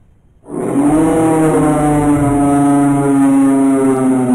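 A loud, steady horn-like blast starts suddenly about half a second in and holds one low pitch to the end.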